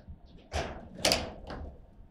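Foosball table in fast play: sharp clacks of the ball being struck by the plastic men and the steel rods knocking in the table. The loudest bang comes about a second in, with a smaller knock just before it and lighter clacks after.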